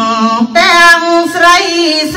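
A woman chanting Khmer smot, a sung Buddhist recitation, in long held notes that bend up and down.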